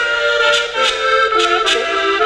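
Diatonic button accordion playing a lively folk tune in held, changing chords, with sharp clicks keeping a steady beat about three times a second.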